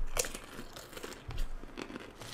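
A foil chip bag crinkling as a hand reaches in for chips, with several short, separate crunches of potato chips.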